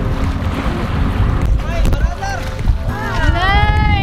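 Steady low rumble of a moving boat with wind on the microphone. From about halfway through, several people let out drawn-out exclamations that rise and fall in pitch, overlapping and building toward the end, as dolphins surface beside the boat.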